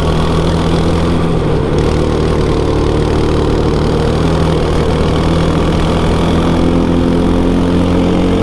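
Go-kart's small petrol engine running hard under load, heard from the driver's seat, its note holding fairly steady.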